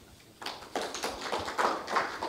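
Small audience applauding at the close of a talk, the clapping starting about half a second in.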